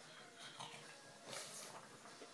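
A pug makes two short, faint breathy noises while it stands begging for its dinner.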